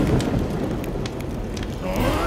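Crackling of a cartoon campfire: a steady low hiss with scattered sharp pops, and a rising tone coming in near the end.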